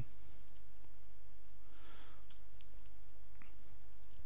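A few scattered clicks of a computer keyboard and mouse, mostly between two and four seconds in, over a steady low hum.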